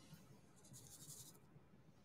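Faint, brief scratching of a diamond-painting drill pen working resin drills: a short scratch right at the start and a longer one of about half a second a little past one second in.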